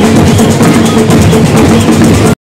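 Drums beaten in a fast, steady rhythm amid a loud crowd, with voices raised over them.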